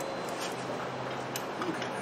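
A few faint, light clicks and taps of metal parts as the front caster wheel and its axle bolt are handled on the mower's fork, over a low steady hum.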